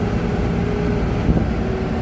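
Diesel engine and tyre-on-road noise of a Mercedes-Benz truck cruising along an asphalt highway, a steady low rumble with a faint constant hum. A single light knock sounds just past the middle.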